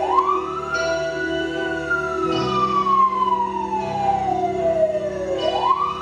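Wailing siren sound effect: the pitch sweeps up quickly, slides slowly down over about five seconds, then sweeps up again near the end. A steady low musical drone is heard underneath.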